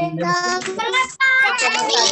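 Several children's voices calling out an answer together in a drawn-out, sing-song chorus.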